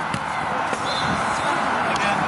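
Open-air ambience of a junior football match: the steady murmur of distant voices and players on the pitch, with a dull thud a fraction of a second in and a softer one shortly after, like a football being kicked.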